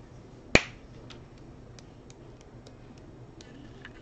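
One sharp click about half a second in, then a string of faint light ticks: a small plastic pot of Brusho watercolour crystals being handled and tapped to sprinkle crystals onto wet paper.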